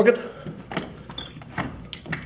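Door lever handle and latch being worked on a door that seems locked: about five sharp metallic clicks and rattles, roughly every half second.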